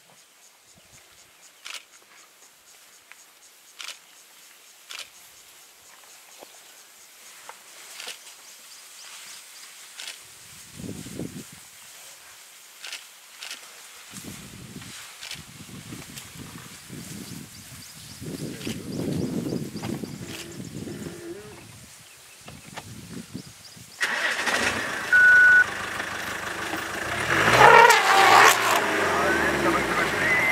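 Sparse sharp snaps of twigs and branches breaking as elephants move through thick bush, with patches of low sound. About three-quarters of the way through the sound cuts abruptly to a much louder safari vehicle engine running, its pitch falling in glides near the end.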